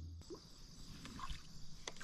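Faint outdoor background noise with a few small handling clicks, one near the end. A low hum cuts off just after the start.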